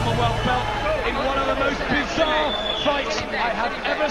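Indistinct talking. The low music before it dies away in the first second.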